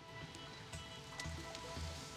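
Quiet quiz-show background music while a question is on screen: sustained held tones over a low, slow pulse.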